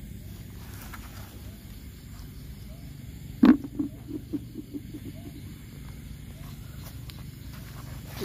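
A land snail's shell dropped into a plastic bucket: one sharp knock about halfway through, then a quick run of fainter knocks from the shell rattling against the bucket, dying away within a second. A steady low hum lies underneath.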